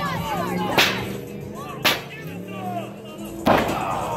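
Three sharp, loud cracks of a metal folding chair striking a downed wrestler and the ring, about a second apart with the last the loudest, over crowd voices.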